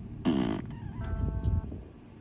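A short vocal noise, a silly sound made with the mouth, followed about a second in by a brief steady tone; the sound fades near the end.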